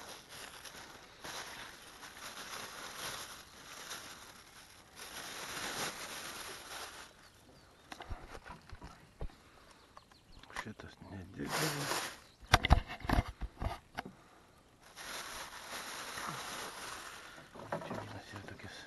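Rustling and handling noises in a wooden rowboat as fishing gear is moved about, with a run of sharp knocks about two-thirds of the way through.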